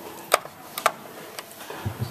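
A few sharp, irregular clicks and taps as metal test-meter probe tips knock against the plastic ceiling rose and its terminal screws, one clearly louder about a third of a second in and a quick pair just before the middle.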